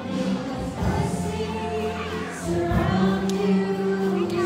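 A group of voices singing a hymn together with worship-band accompaniment, in long held notes.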